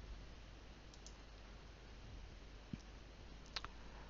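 A few faint computer mouse clicks scattered over quiet room tone.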